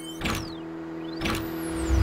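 Electronic sound design for an animated intro graphic: a steady synthetic hum with two quick whooshes, about a third of a second and just over a second in, and thin high tones sweeping down and up, building into a louder low swell at the end.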